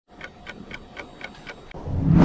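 Clock ticking steadily at about four ticks a second, with a rising whoosh swelling in near the end: an intro sound effect.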